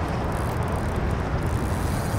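Wind buffeting the microphone: a steady low rumble with a hiss of choppy river water over it, and no distinct events.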